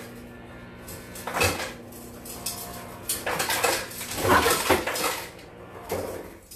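Ice cubes clattering into a glass: a short rattle about a second and a half in, then a longer run of clinking from about three to five seconds.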